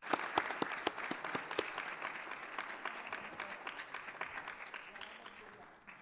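Audience applause that starts suddenly with sharp, distinct claps, loudest in the first couple of seconds and then slowly dying away.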